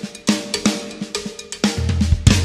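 Drum kit played solo with sticks: separate strokes, about four a second, on drums that ring briefly after each hit, with cymbal splash. A deeper low boom comes in near the end.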